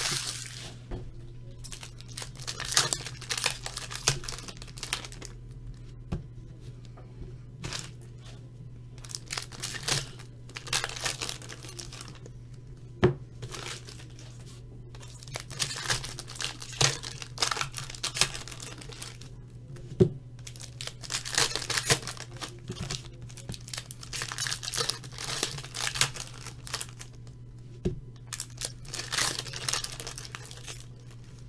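Foil trading-card pack wrappers being torn open and crinkled by hand, in repeated bursts of rustling with a few sharp clicks, over a low steady hum.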